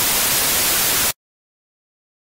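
Loud television-static hiss from a static-screen glitch effect, cutting off abruptly about a second in.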